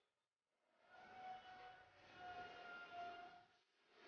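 Near silence: a faint hiss with a thin, steady whine in the middle, with dead silence just before and after it.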